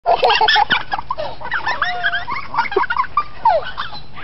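Canada geese honking in a rapid string of short, overlapping calls, loudest in the first moment.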